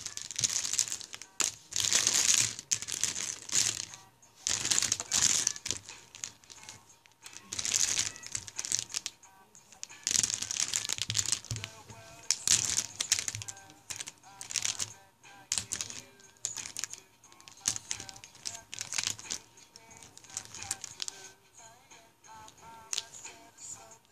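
Plastic Sharpie markers clattering and clicking against each other as a hand rummages through a pile of them. The sound comes in repeated bursts of rustle and click every second or two, thinning out near the end.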